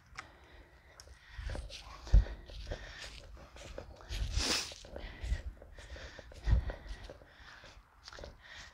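Handling noise from a camera being picked up and carried across a yard: irregular low bumps and rustles, with a louder rustle about halfway through, along with footsteps on grass and dry leaves.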